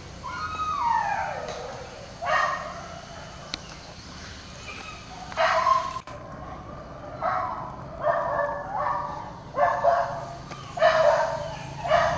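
A pack of leashed boar-hunting dogs calling out excitedly: a drawn-out falling cry near the start, then a string of short barks and yips through the rest.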